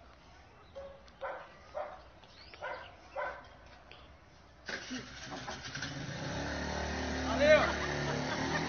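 A motorbike engine starts suddenly about four and a half seconds in and keeps running, growing louder. A brief loud voice-like sound comes near the end, and faint voices are heard earlier.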